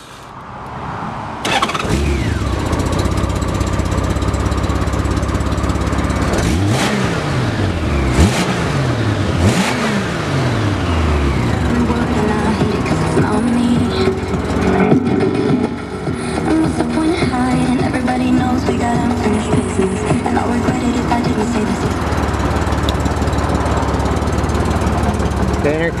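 Honda Gold Wing GL1500 flat-six engine started: a short crank that catches about a second and a half in, then settles into an idle. The throttle is blipped three or four times between about 6 and 10 seconds, the engine note rising and falling each time, before it returns to a steady idle.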